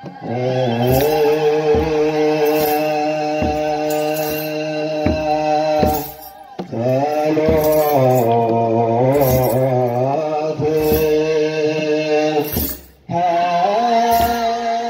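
Ethiopian Orthodox wereb hymn sung together by a children's Sunday-school choir in long, wavering held lines, over a regular beat a little faster than once a second. The singing breaks off briefly twice, about six seconds in and near the end.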